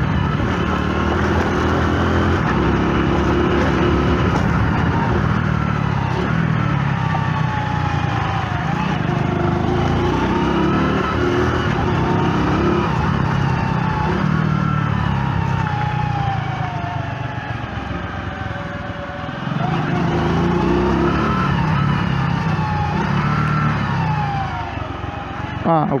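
Small commuter motorcycle's engine running under way, its pitch rising and falling with throttle and gear changes, and easing off for a few seconds about two-thirds of the way in.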